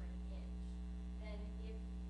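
Steady electrical mains hum on the sound-system recording, with faint, indistinct speech underneath.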